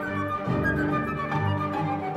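Solo flute playing held melodic notes over sustained orchestral strings in a flute concerto.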